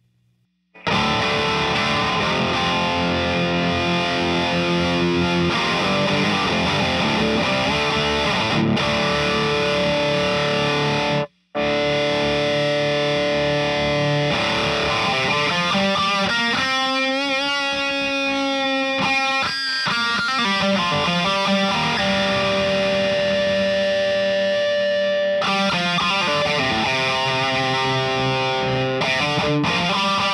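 Distorted electric guitar played through a Dead World Audio Engineering Duality DX drive pedal. Playing starts about a second in and stops for a moment a little past the middle. The second half brings long held, ringing notes before the riffing picks up again.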